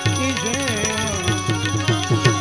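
Instrumental interlude of Gujarati devotional folk music: a harmonium holding steady chords while a tabla plays a quick beat, its bass strokes gliding down in pitch, with small hand cymbals ticking along.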